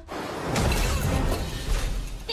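Animated-film crash sound effect: a long, noisy crash and clatter with a deep low rumble, as a jewelled metal goblet of small trinkets topples and spills across the sand.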